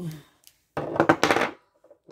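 A woman's voice speaking a few words in two short bursts, with near silence between them.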